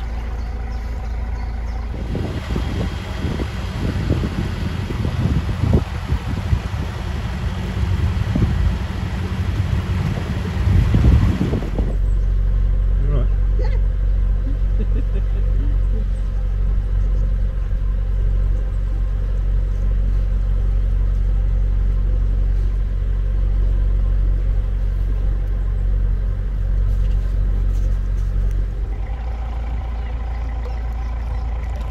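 Narrowboat's diesel engine running at a steady low hum. For the first ten seconds or so a rougher, gusty noise lies over it, and this stops abruptly.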